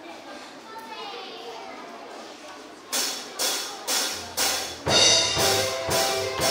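Low murmur of children's voices in a hall, then a children's band starts up about three seconds in: sharp percussion strokes about two a second, with low bass notes and then keyboard chords joining near the end.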